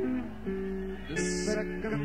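Live rock band playing a slow passage led by ringing guitar chords, the held notes changing chord twice, with a brief high hiss about a second in.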